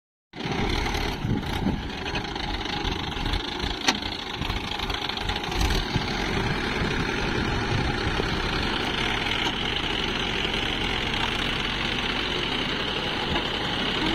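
Mahindra Yuvo 415 DI tractor's diesel engine running steadily under load while the rear rotavator churns wet paddy mud. A few sharp clacks come in the first six seconds.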